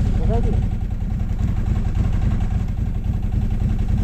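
OSM SM1000 snowmobile engine running steadily at low revs while the stuck machine fails to move off in deep snow.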